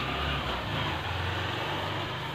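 Chalkboard duster wiping across a chalkboard in continuous scratchy strokes, over a low steady hum.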